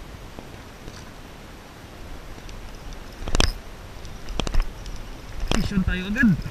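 Steady wind and water noise, with a few sharp knocks from about three seconds in and a short voice-like sound near the end.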